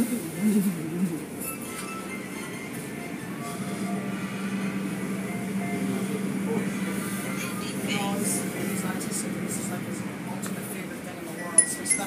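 Tunnel car wash machinery running behind glass: a steady low hum that swells a few seconds in and holds, with faint background voices and one sharp click near the end.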